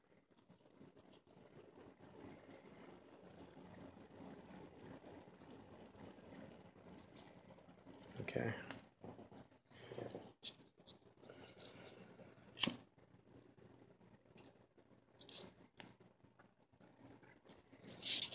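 Faint rustling of hands handling thin hookup wires and small plastic servo-wire connectors on a circuit board. In the second half come a few sharp clicks, the loudest about two-thirds of the way in, and a short spoken 'okay' near the middle.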